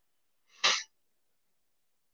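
A man's single short, sharp burst of breath, like a sneeze, about half a second in.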